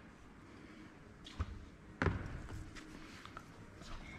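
Quiet handling noises: a light knock about a second and a half in, then a sharper clunk at about two seconds, and a few faint clicks.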